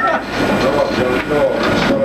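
Office background noise: indistinct voices in the room with scattered mechanical clicking and clattering.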